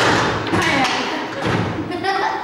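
Foosball table in play: repeated thuds and taps as the rods are worked and the ball is struck by the player figures, with voices over it.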